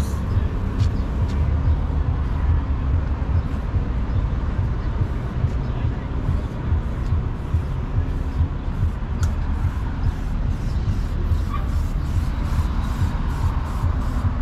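Outdoor background noise: a steady low rumble with faint voices in the background.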